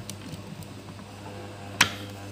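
The USB plug of a Logitech G102 Prodigy gaming mouse being pulled out of a laptop's USB port, giving one sharp click near the end. A steady low hum runs underneath.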